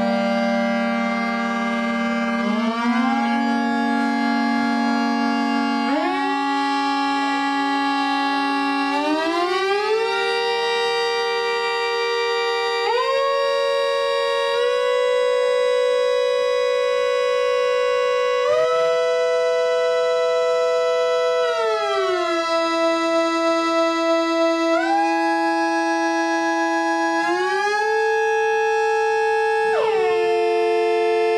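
Analog synthesizers playing an instrumental drone of several held notes that glide smoothly up or down to new pitches every few seconds, with a brief pulsing wobble about three quarters of the way through.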